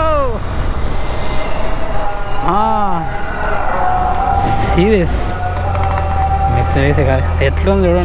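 Motorcycle riding in traffic with steady engine and road noise. Over it come three short, rising-then-falling vocal sounds from a person. About halfway through, a steady low engine rumble sets in as the bike slows in the queue of cars.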